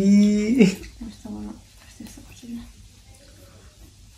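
A person's voice: a long, drawn-out exclamation in the first second, then a few short vocal sounds before the room goes quiet.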